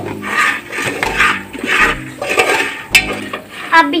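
A spoon stirring and scraping maize kernels in oil around an aluminium pressure cooker, in repeated strokes, with a sharp click about three seconds in.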